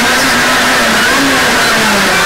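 Rally car engine heard from inside the cabin, running hard at high revs on a tarmac stage with road noise, its pitch wavering and dropping a little near the end as the car slows.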